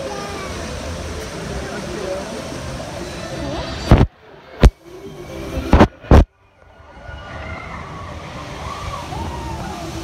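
Water rushing and sloshing around a log flume boat, with voices and music in the background. About four seconds in come four loud knocks with muffled near-silent gaps between them, as a hand covers the phone and its microphone. After that the water sound returns, quieter.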